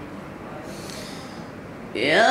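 A Quran reciter drawing a long breath close to the microphone, a soft breathy hiss lasting about a second. His chanted recitation of the next verse comes back in right at the end.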